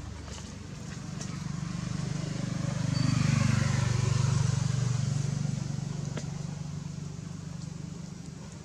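A motor vehicle's engine passing by: a low hum that swells to its loudest about three to five seconds in and then fades away.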